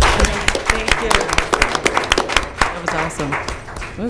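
A small group applauding: scattered hand claps that thin out and fade away after two to three seconds.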